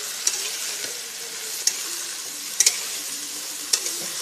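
Yardlong beans, potato and pointed gourd sizzling steadily in hot oil in a wok while a metal spatula stirs and tosses them, knocking sharply against the pan a few times.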